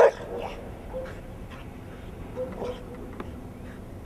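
A Rottweiler gives one short, loud bark right at the start, followed by a few faint short sounds.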